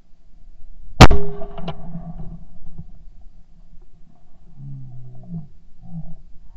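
A single shotgun shot from a 12-bore Yildiz side-by-side about a second in, very loud and close, its report fading over the following second or two. A brief low human voice sound follows near the end.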